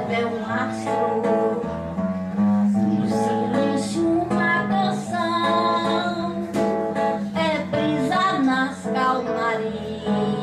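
A woman singing into a microphone, accompanied by an acoustic guitar.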